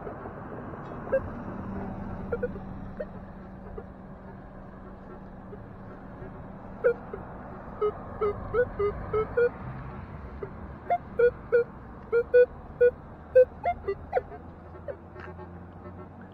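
Minelab metal detector sounding clusters of short beeps as its search coil is swept back and forth over a buried target. The beeps are mostly one mid tone with a few higher ones and come from about seven seconds in.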